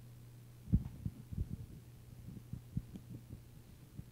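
Steady low electrical hum from the room's sound system, with a run of soft, irregular low thumps and knocks. The thumps start under a second in, the first is the loudest, and they die away before the end.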